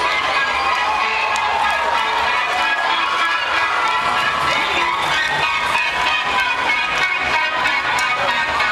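Live band playing the opening of a song on a festival stage, with the crowd cheering and singing over it, heard from among the audience.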